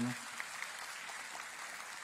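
An audience applauding, a steady, fairly faint clapping.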